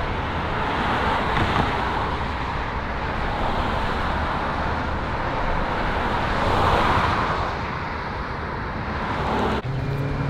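Road traffic on a street: a steady wash of tyre and engine noise, swelling as a car passes about two-thirds of the way through.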